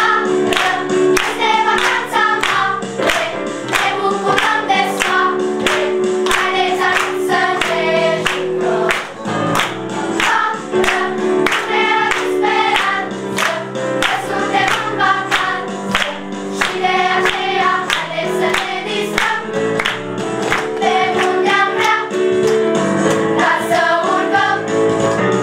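A small group of girls and a man singing a lively children's song together over an instrumental backing, with hand claps keeping a steady beat of about two to three a second.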